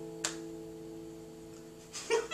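Acoustic guitar's final chord ringing out and slowly fading, with one short click about a quarter second in.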